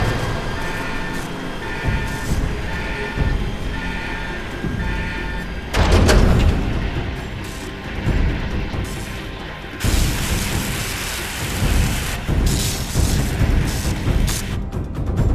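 Spaceship launch sound effects: an alarm beeps about once a second, five times, as a launch warning, then a deep rumble sets in about six seconds in and a louder rushing noise surges about ten seconds in as the Raptor launches through the airlock.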